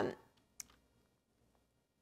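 The tail of a spoken "um", then a single short click about half a second in, followed by near silence.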